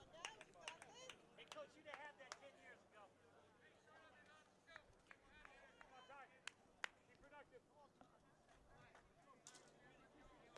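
Faint ballpark ambience: distant voices calling and chattering on and around the field, with two sharp clicks close together about six and a half seconds in.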